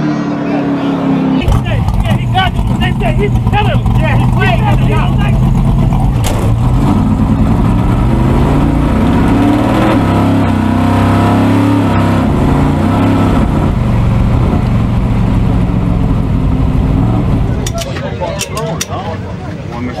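A V8 drag car run at full throttle, its engine pitch climbing and dropping back several times as it shifts up through the gears, with people shouting over it early on. The engine sound fades near the end.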